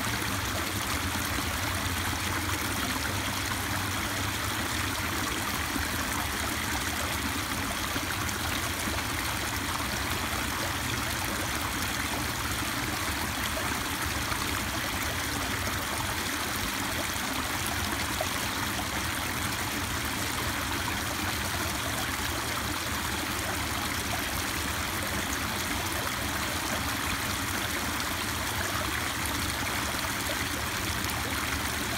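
Small waterfall pouring into a shallow pool, a steady splashing rush of water.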